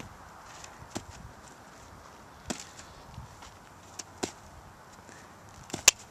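A horse's hooves striking a dirt pen floor as it walks: a handful of sharp knocks at uneven intervals, two close together about four seconds in and two more near the end.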